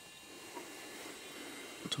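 Quiet room tone: a faint, steady hiss with a few thin, steady high tones, and no distinct event.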